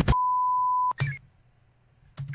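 A single steady, high electronic beep lasting just under a second, cut off by a click and followed by a brief blip, then near silence.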